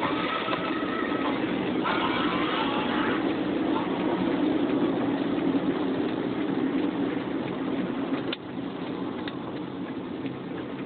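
Car heard from inside the cabin while driving: steady engine and road noise, with a few faint traces of music about two seconds in. The level drops suddenly about eight seconds in.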